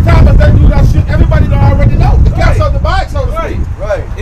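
Men's voices outdoors, heard through a heavy, steady rumble of wind on the microphone that fills the bottom of the sound.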